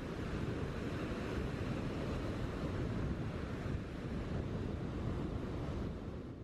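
Small waves washing up onto a sandy beach: a steady, even surf wash.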